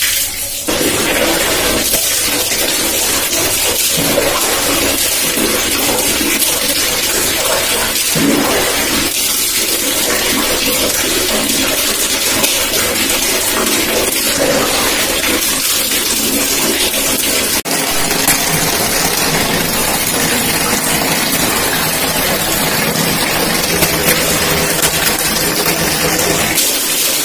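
Tap water running steadily, splashing over hair and into a plastic bucket, with a brief break about two-thirds through.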